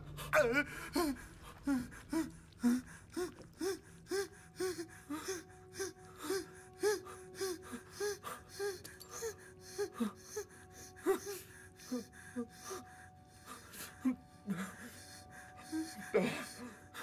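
A young man's rapid, frightened gasping breaths with small whimpers, about two a second, over a faint steady musical drone.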